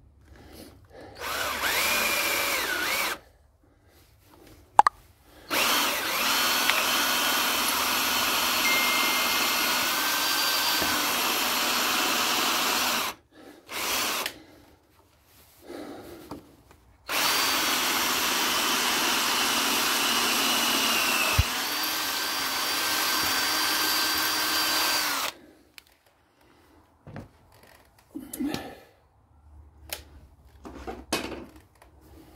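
Makita 18-volt cordless drill drilling in four runs, two of them long, each a steady motor whine that shifts pitch slightly partway through. A single sharp click falls between the first and second runs.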